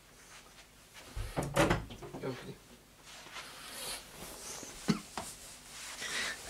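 Household door sounds in another part of the house: a heavy thump and knocks about a second in, with a muffled voice, then a sharp click near five seconds. Near the end, rustling close to the microphone as a person comes back in front of it.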